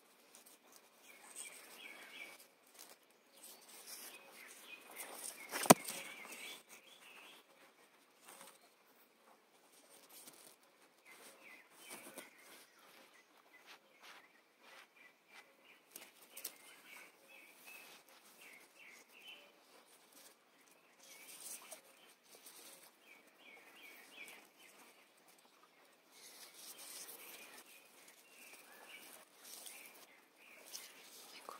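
Faint woodland ambience with small birds chirping on and off, light rustling of leaves and handling noise as a hand moves through the plants, and one sharp click about six seconds in.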